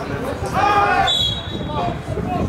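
A referee's whistle sounds one steady, high blast starting about a second in and lasting most of a second, stopping play for a foul after two players tangle over the ball. Just before it comes a loud shout.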